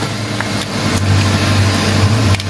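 Kia Picanto engine idling with a steady low hum, running on its own after being jump-started because of a dead battery.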